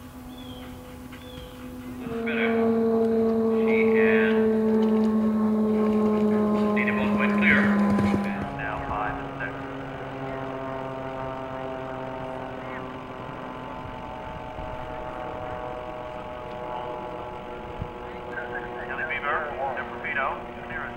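A steady low motor-like drone, loudest and slowly sinking in pitch for several seconds, with faint voices in the background; the sound changes abruptly twice.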